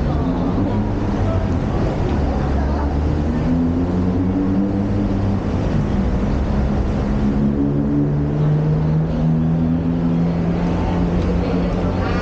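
Road traffic below and beside a footbridge: a steady low engine hum from passing heavy vehicles, its pitch shifting slowly as the engines move along. Passers-by talking can be heard over it.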